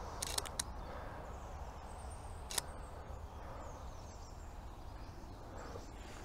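Faint steady low rumble of traffic on a nearby road, with a couple of short sharp clicks near the start and another about two and a half seconds in, a DSLR camera's shutter firing.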